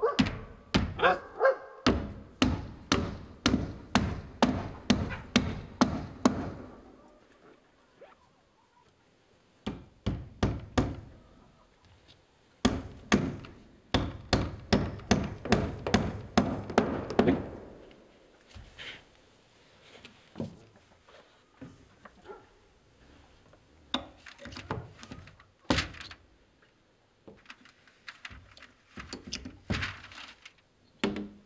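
A hammer driving nails into wood, in long runs of quick blows, about two to three a second, with a short run between them and then scattered single strikes later.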